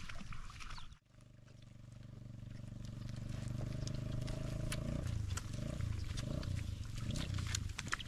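Sheep calling with long, deep bleats that waver from about five seconds in. From about four seconds in there is the crisp tearing of grass as sheep graze right beside the microphone.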